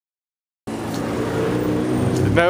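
Silence, then, about two-thirds of a second in, a vehicle engine starts to be heard running steadily at an even pitch.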